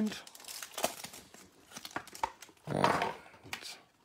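A foil trading-card pack being torn open and crinkled by hand, with scattered small crackles and rustles. A short murmur from a voice comes about three seconds in.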